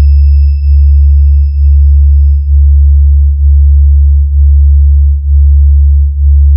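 Electronic sub-bass test tone of a DJ 'vibration' speaker-check track: a loud, steady, very deep sine tone broken by a short dip about once a second. A faint high whistle fades away in the first half.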